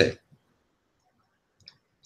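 A man's voice finishing a word, then quiet with one faint short click about a second and a half in.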